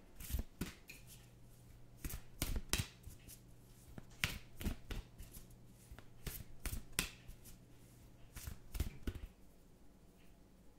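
A tarot deck being shuffled and handled by hand: irregular card slaps and riffling clicks, some in quick clusters.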